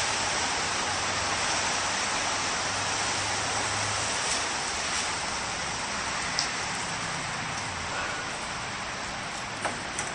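A steady, even hiss of background noise with a faint low hum underneath, easing slightly after about seven seconds.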